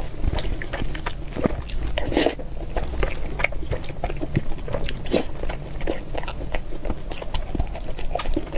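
Close-miked eating: a person chewing mouthfuls of saucy food, with a dense, irregular run of short wet smacks and clicks from the mouth.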